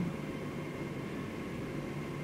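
Steady background hiss and low hum with no distinct sound event: room tone.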